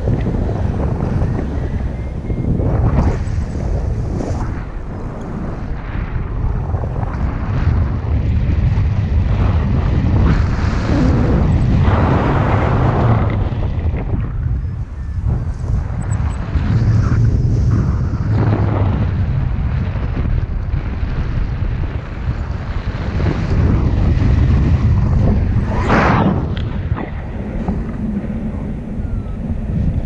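Airflow buffeting the action camera's microphone during a tandem paraglider flight: a steady low rumble that swells and eases with the gusts, with a brief sharper rush of wind near the end.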